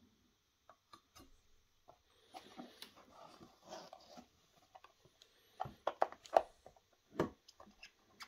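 Clear plastic accessory boxes being lifted out of a foam-lined case drawer and handled: scattered plastic clicks and taps with some rustling, and a cluster of sharper knocks a little past the middle.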